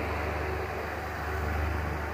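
Steady low hum with an even hiss: room tone.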